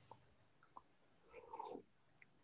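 Near silence on a video call: room tone with a few faint clicks and one brief faint sound about one and a half seconds in.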